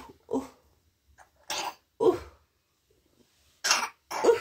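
A person coughing in short, separate bursts, about four times.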